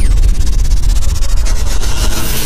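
Sound effects for an animated channel intro: a falling whoosh right at the start, then a loud crackling, static-like hiss over a deep bass rumble.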